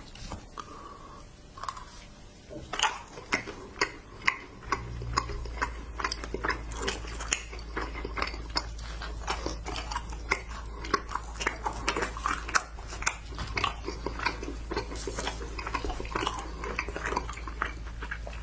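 Close-miked chewing of candy: wet mouth clicks and smacks, several a second, over a steady low hum that starts about five seconds in.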